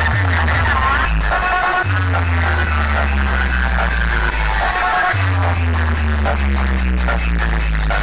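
Electronic DJ remix music played very loud through a large DJ sound-system speaker stack, dominated by long, deep bass notes with slow falling pitch slides above them.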